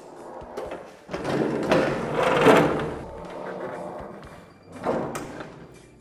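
A heavy floor-standing Jet bandsaw being shifted across the floor by hand: a scraping, grinding noise that swells about two seconds in and fades, followed by a few short knocks.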